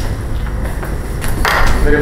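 A steady low rumble with a few faint clicks, and a man's voice starting near the end.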